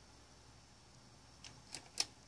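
Near silence: room tone, with a few faint, short clicks near the end.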